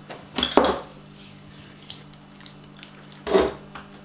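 Dijon mustard jar being handled while fingers scoop the mustard out and smear it on a table: two short clatters with a wet squish, about half a second in and again near the end, over a steady low hum.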